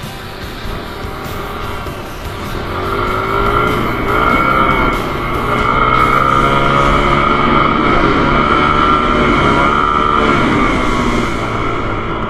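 Dirt bike engine heard from the rider's helmet camera, its pitch rising and falling repeatedly as the throttle is worked. It gets louder about three to four seconds in.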